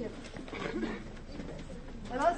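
Faint background voices of a group of people talking, quieter than the guide's speech on either side.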